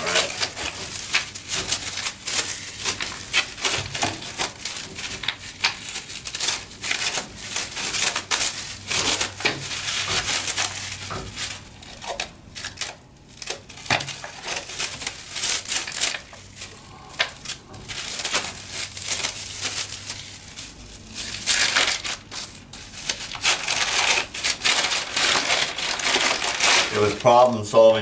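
Plastic wrapping and paper crinkling and crackling in irregular bursts as a wrapped wooden case is unwrapped by hand, with a quieter lull about halfway through.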